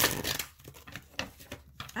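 Tarot cards being shuffled: a dense burst of rapid card flicks in the first half-second, then scattered soft clicks of cards being handled.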